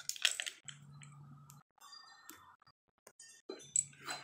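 A few small clicks and clinks of plastic sunglasses being handled and put on: a quick cluster in the first half-second and a couple more near the end, with a faint low hum in between.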